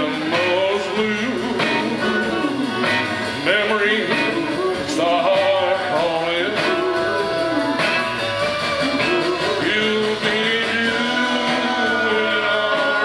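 Live country music: acoustic guitar strumming, a washboard scraped and tapped in rhythm, and a man singing.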